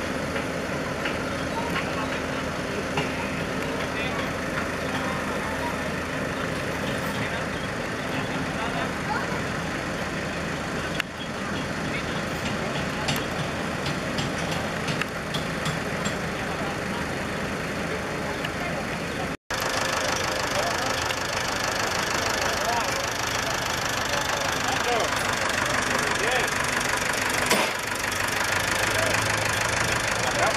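Busy crowd chatter mixed with tractor engines running at idle. The sound cuts out for an instant about two-thirds of the way through.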